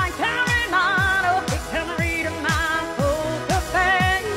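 Pop song with a steady kick drum about twice a second and a high, wavering sung melody over it.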